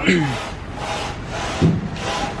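Large glazed vitrified tiles scraping and rubbing against each other and their cardboard packing as they are handled, with a thump about one and a half seconds in.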